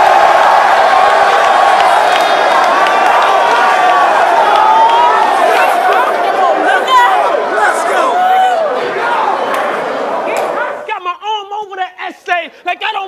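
A crowd of many people cheering and shouting at once in a large hall. It cuts off abruptly about eleven seconds in, giving way to one man's voice shouting.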